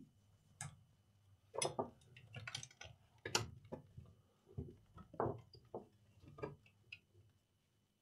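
Irregular light clicks and knocks, about a dozen spread over several seconds, from hands handling an open AV receiver's chassis and front panel.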